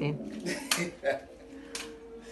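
Metal drywall stilts knocking and clacking on a hard floor as the wearer steps, a few sharp knocks, mixed with fragments of a man's voice.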